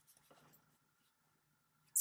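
Near silence: room tone with a faint steady hum and a faint brief rustle just after the start.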